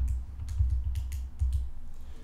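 Calculator keys being pressed: about half a dozen quick clicks spread over two seconds, with several dull low thumps underneath.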